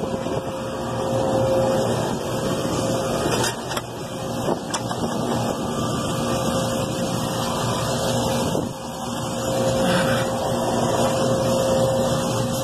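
Steady mechanical drone with a constant hum, from the other refrigeration condensing units running close by, with a few light clicks and knocks from handling between about three and a half and five seconds in.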